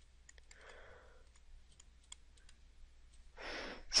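Faint, irregular clicks of a stylus tapping on a tablet screen during handwriting. A soft breath comes about half a second in, and an inhale comes near the end.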